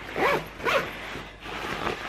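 A zipper on a lightweight nylon daypack pocket pulled in two quick strokes in the first second, followed by quieter handling of the fabric.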